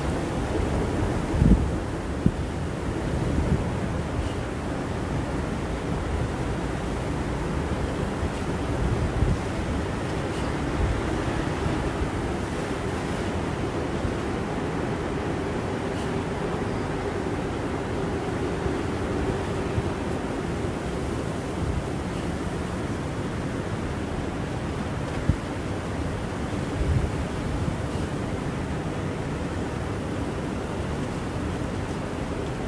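Steady rushing wind noise on an outdoor microphone, heaviest in the low end, with a few brief low thumps of buffeting.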